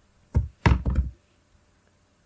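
Computer keyboard keystrokes: one about a third of a second in, then a quick run of several more by about a second in.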